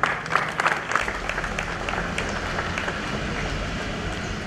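Audience applauding: a burst of clapping that thins to scattered claps and dies away.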